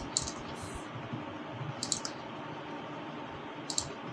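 A few faint computer mouse clicks, some in quick pairs, over a steady low hiss.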